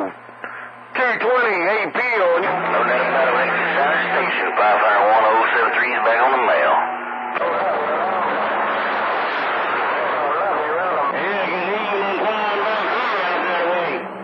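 Distant CB stations received as skip on channel 28, heard through the radio's speaker: several voices talking over one another, distorted and hard to make out. The signal drops briefly just after the start.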